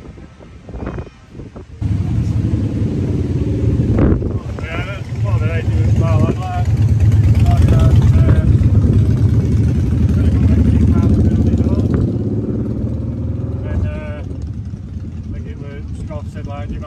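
A motorcycle engine comes in suddenly about two seconds in and runs steadily at idle, loudest through the middle and easing slightly near the end. People are talking in the background.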